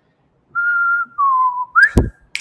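A man whistling a short phrase: a held high note, a slightly lower note that sags in pitch, then a quick upward slide. A single sharp click comes right at the end.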